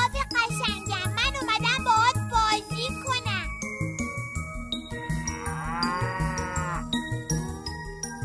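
A cartoon cow moos once, one long call about five seconds in, over a jingly children's music backing with a steady beat. Before the moo, over the first few seconds, there is a rapid warbling sound effect.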